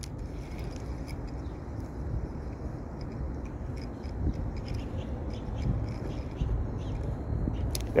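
Spinning reel being cranked to retrieve a lure, with faint scraping ticks from the reel over a steady low rumble.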